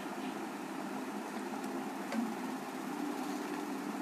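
A steady low mechanical hum of background noise, with no speech.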